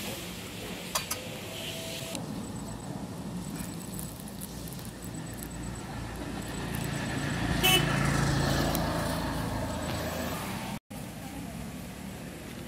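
A motor vehicle driving past on the road. It grows louder to a peak about eight seconds in, then fades away.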